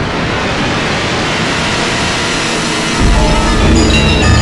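Edited Windows system sound that starts suddenly with a loud, steady rush of noise like surf or static. About three seconds in a deep bass joins, and short bright electronic notes begin near the end.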